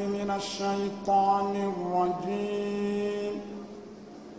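A man chanting on long, steady held notes, an Islamic religious chant sung into a microphone; the voice dips in pitch about two seconds in and stops a little after three seconds.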